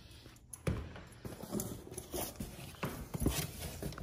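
A large cardboard shipping box being handled and lifted: irregular knocks, scrapes and rustles of cardboard, mixed with the phone's own handling noise.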